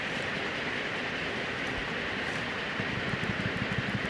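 Steady background noise with no speech: an even hiss over a low rumble, the rumble getting a little choppier near the end.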